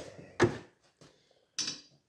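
A single sharp knock about half a second in, then a short rustling hiss near the end.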